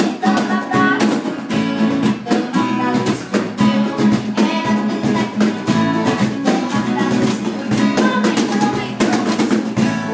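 Acoustic guitar strummed in a steady rhythm, an instrumental passage with no singing.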